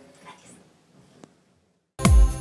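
Quiet room tone after speech, with a faint soft sound from the woman early on and a single small click a little over a second in, then dead silence.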